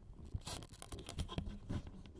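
Handling noise picked up directly by a Zoom H1n recorder's built-in stereo mics: scattered small clicks, taps and scrapes as the recorder is handled and mounted on a stand.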